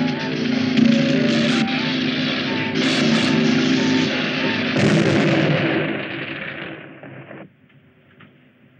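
Film soundtrack: sustained dramatic music under a loud, dense crackling noise with several sharp blasts, fading and then cutting off abruptly about seven and a half seconds in.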